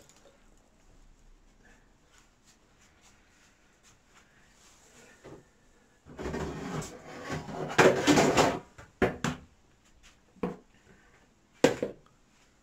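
Plastic food bowls being handled on a countertop: a quiet first half, then a few seconds of knocking and rattling, followed by several sharp single knocks, the last near the end.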